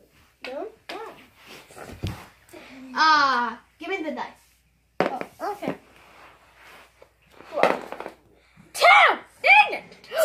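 Young children's voices exclaiming and calling out, several loud high-pitched calls. There is a single brief thump about two seconds in.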